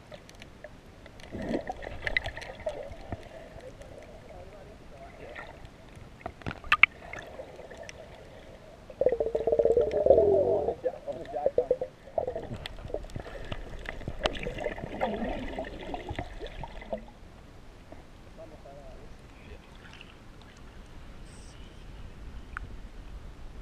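Muffled water movement and gurgling around a submerged camera, loudest in a stretch of bubbling about nine to eleven seconds in and quieter near the end.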